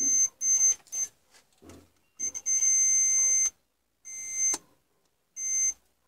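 DT9205A digital multimeter's continuity buzzer beeping as the probe tips touch points on a circuit board, a sign of low resistance between the probed points. Three short beeps in the first second, then one long beep of about a second, then two shorter ones.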